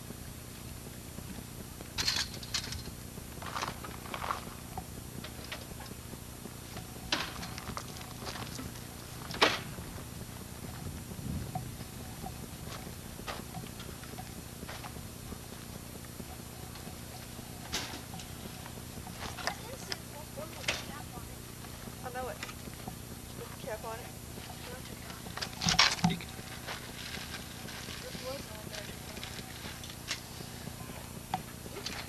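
A steady low hum with scattered short, sharp clicks and knocks, the loudest about two seconds in, near the middle and near the end, under faint indistinct voices.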